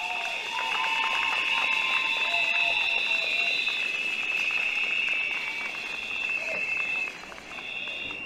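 A rally crowd blowing whistles: several high whistle tones held together, with clapping in the first few seconds. The whistling fades out near the end.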